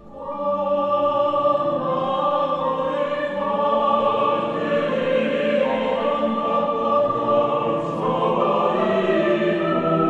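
Mixed choir of women's and men's voices singing a Korean choral song in sustained chords, starting a new phrase right at the beginning after a brief breath.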